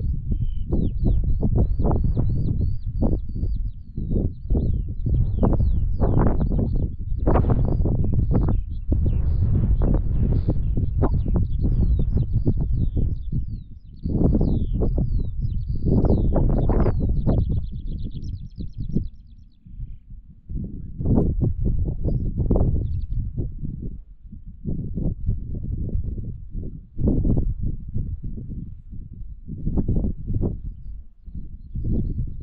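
Wind buffeting the microphone in uneven gusts, a loud low rumble throughout. Over it a small songbird sings a long run of rapid high chirps, which stops about two-thirds of the way through.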